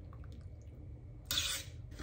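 Thick strawberry yogurt drink poured from a plastic bottle onto chopped strawberries in a bowl: soft wet pouring with faint drips, and a short louder scraping sound about a second and a half in.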